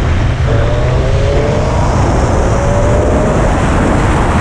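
Motorcycle riding along at speed, the wind rushing loudly over the microphone; under it the engine note rises gently from about half a second in as the bike picks up speed.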